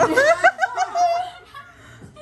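Loud laughter: a quick run of short rising-and-falling bursts over the first second or so, then it dies down.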